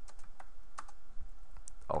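Computer keyboard keys clicking in a run of irregular keystrokes as text is typed. A man's voice starts speaking just at the end.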